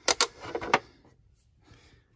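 Hinged plastic cover of a Square D Qwikline consumer unit being shut over the breakers: a quick run of sharp clicks and knocks within the first second.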